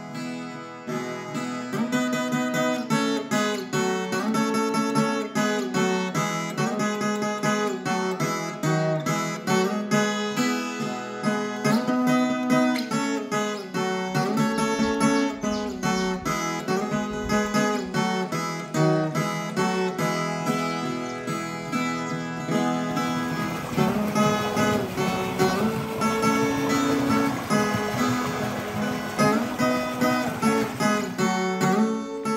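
Instrumental viola caipira (Brazilian ten-string folk guitar) music, plucked and strummed in a steady rhythmic melody.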